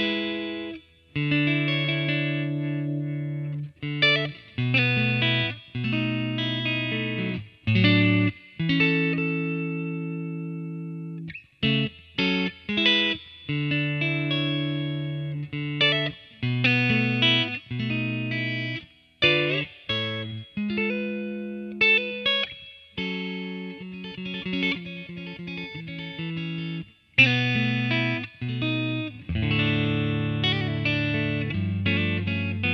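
Fender Custom Shop '61 Telecaster Relic electric guitar (ash body, rosewood fingerboard) played through an amp on both pickups together, mixing strummed chords with single-note phrases. The chords ring for a second or two and are cut off sharply, with quicker picking toward the end.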